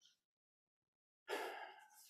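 A man drawing a quick breath in close to a microphone, after a second or so of near silence, just before he speaks.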